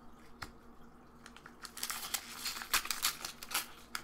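Foil Pokémon booster pack wrapper crinkling in the hands. It is quiet at first with a few light card clicks, and from about two seconds in there is a dense run of sharp crackles.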